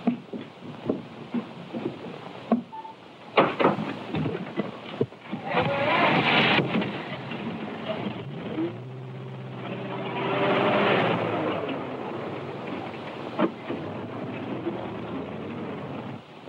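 Open touring car's engine running as it drives over rough ground, with a steady hum that swells about six and again about eleven seconds in, heard through the hiss and crackle of a worn early sound-film track.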